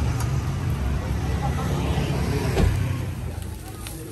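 Street traffic beside the stall, a low steady rumble of passing vehicles that fades near the end, with faint voices in the background.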